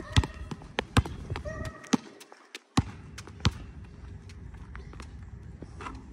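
Basketball dribbled on an outdoor asphalt court: a run of sharp, irregular bounces, closest together in the first three seconds and sparser after.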